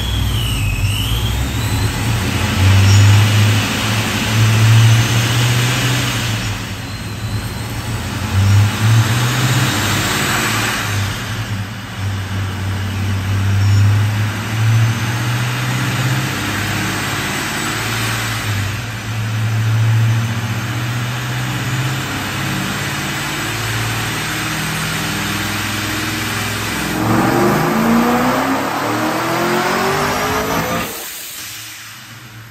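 Supercharged LS V8 in a Chevelle running on a chassis dyno, its note swelling and easing several times, then climbing steadily in pitch over the last few seconds as it revs up.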